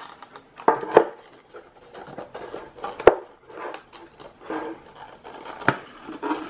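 Hard plastic box being handled and pried at by hand: light rubbing and scraping broken by sharp plastic clicks about a second in, around three seconds in and near the end.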